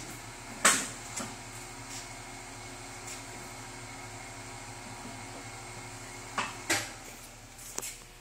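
Rondo 36-part automatic dough divider rounder running in cut-only mode: a steady motor hum. A sharp mechanical clunk comes about a second in, and two more clunks follow near the end as the hum eases off.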